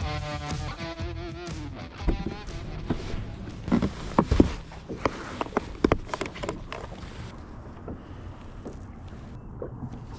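Music ends about a second and a half in, followed by irregular knocks and clicks from fishing tackle being handled on a bass boat's carpeted deck while a soft-plastic bait is rigged.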